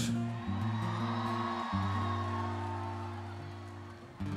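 Live band playing slow sustained chords over a low bass line that steps between notes, with crowd noise beneath, gradually fading toward the end.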